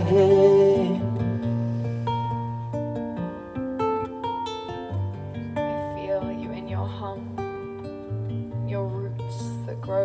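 Acoustic guitar playing an instrumental break, single picked notes ringing over long low bass notes, after a held sung note fades out in the first second.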